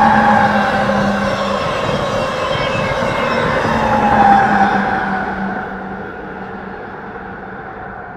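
Amtrak Siemens ACS-64 electric locomotive and coaches passing at speed: wheel-and-rail noise with a whine from the locomotive that falls in pitch as it goes by. A second falling whine and a brief rise in level come about four seconds in as the trailing locomotive of the double-headed set passes, then the train noise fades away.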